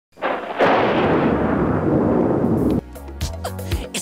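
A loud, dense rumbling crash, explosion- or thunder-like, lasting about two and a half seconds and cut off abruptly. Music with a bass beat then begins near the end.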